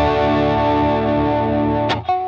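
Electric guitar through a Klon-style overdrive pedal, a mildly overdriven chord held and ringing, then struck again just before the end.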